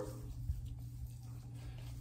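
Quiet room tone with a steady low hum and only faint small sounds.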